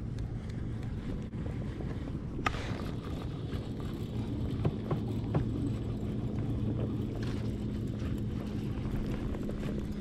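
A steady low hum with wind and water noise from a fishing kayak on the water. A few sharp clicks from the baitcasting rod and reel being handled stand out, the clearest about two and a half seconds in.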